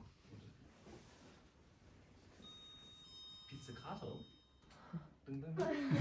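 A quiet room with soft, low speech near the end. In the middle a faint, high, steady electronic tone is held for about two seconds.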